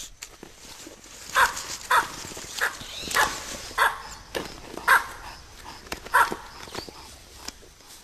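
Baboons giving a run of short, sharp barks, about one every half second to second, the loudest in the middle of the run.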